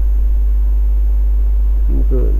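Loud, steady low electrical hum, the mains hum carried on the recording, with no other sound over it.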